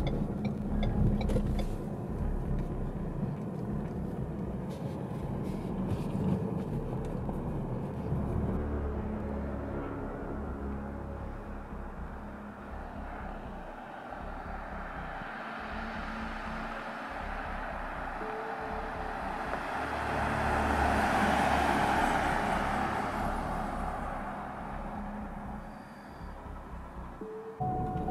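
Car driving on a road: a steady low road rumble, then the rush of a car passing, swelling to its loudest about three-quarters of the way through and fading away.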